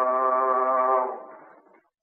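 A male Quran reciter holding one long, steady sung note with a slight waver, in an old recording with little treble; the note ends about a second in and dies away.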